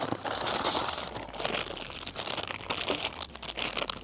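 Plastic packaging bag crinkling and rustling as it is handled, an irregular crackle of many small clicks.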